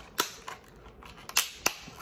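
Clear plastic blister package of a 1/64 diecast car being pried and pulled open by hand, the plastic giving a few sharp snaps and clicks: one just after the start and two more a little past the middle, with faint crinkling between.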